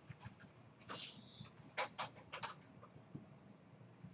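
A short sniff about a second in, then four quick clicks at a computer desk, faint.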